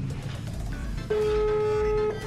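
Outgoing phone call's ringback tone: one steady beep about a second long, starting about a second in, heard through the phone's speaker over background music.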